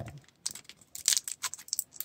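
Clear plastic wrapping crinkling in a quick series of crackles as it is peeled off a small accessory by hand.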